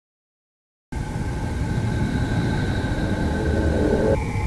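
Dead silence for about the first second, then a steady rumbling drone with a few faint held tones above it, the ambient sound design of the footage.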